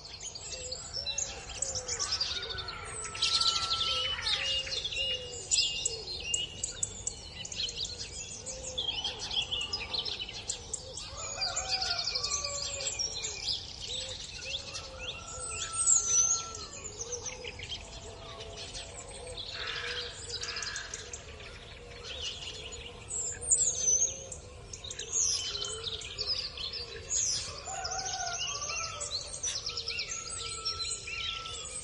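A chorus of many birds singing and chirping at once, short sharp chirps and whistled phrases rising and falling over a steady low background hiss.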